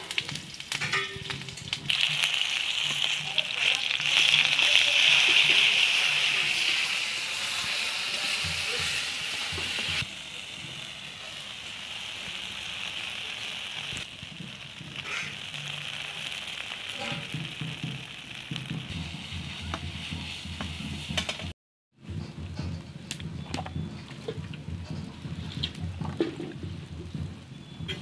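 Food frying in hot oil in a kadai, a steady sizzle with a metal spatula scraping and tapping the pan now and then. The sizzle is loudest in the first several seconds and softer after about ten seconds, with a brief break a little past twenty seconds.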